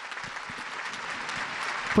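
Large crowd applauding, many hands clapping in a dense patter that grows slightly louder over the two seconds.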